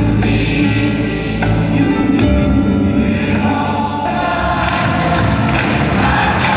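Large gospel choir singing with a live band of drums, keyboards and guitar.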